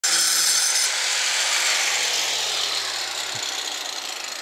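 Electric angle grinder cutting out loose old mortar between bricks, with a high grinding whine for about the first second, then the disc running free and winding down, its pitch falling slowly as it fades.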